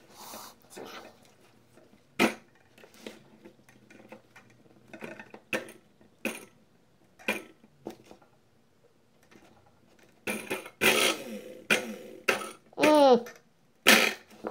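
Small clicks and knocks of wire ends and a lithium-ion battery pack being handled on a table, spaced a second or so apart. Near the end come several louder, rougher bursts, then a short sound that falls in pitch.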